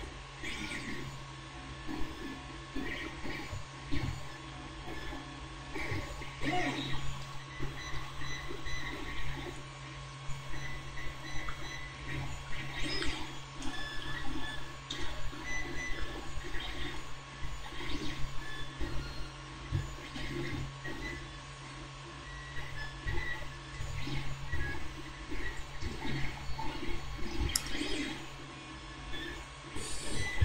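Faint, irregular rustling and small clicks of fingers handling and pressing a freshly glued paper model part closed while the glue sets, over a steady low hum.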